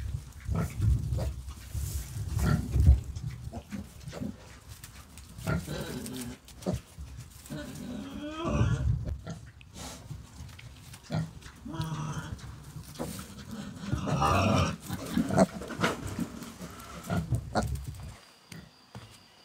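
Several piglets grunting, with a few short, higher squeals among the grunts, loudest about halfway through and again near the end.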